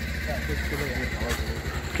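A steady, low, evenly pulsing engine rumble, like a vehicle idling, with faint voices over it.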